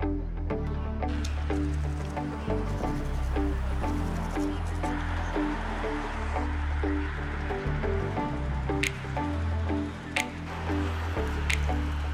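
Background music: sustained bass notes under a repeating pattern of short pitched notes, with a few sharp percussive hits in the second half.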